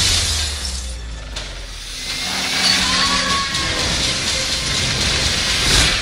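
Movie trailer sound design and score: a hard hit right at the start, then a low rumbling drone with held tones under a hissing swell that dips and builds back up toward the end.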